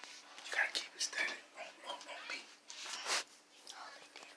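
Whispering voices close to the microphone, in short breathy bursts.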